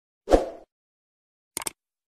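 Subscribe-button animation sound effects: a short low thump about a third of a second in, then a quick double mouse click near the end as the cursor presses the subscribe button.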